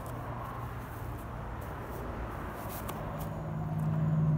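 Low engine hum of a motor vehicle, steady at first and growing louder toward the end.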